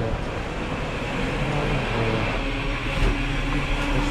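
Fast-food restaurant background noise: a steady low hum of kitchen equipment and ventilation, with faint voices in the background.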